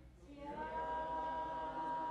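A choir singing slowly, unaccompanied: after a brief pause, a new long note begins about half a second in and is held.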